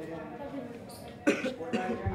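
People talking in the background, with a person coughing sharply just over a second in.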